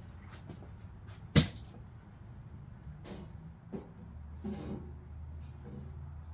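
A single sharp knock about a second and a half in, with a few fainter taps scattered around it. A low steady hum sets in a little past the midpoint.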